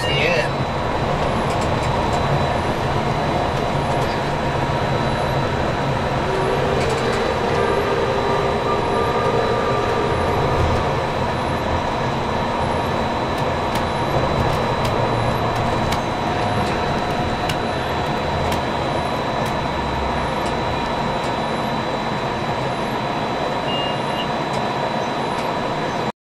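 Cab noise of a moving electric monorail on rubber tyres: a steady running rumble with motor whine and a constant high-pitched tone. A short beep sounds near the end.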